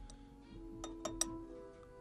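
Soft background music with held notes comes in. Over it, a drinking glass gives three light clinks about a second in.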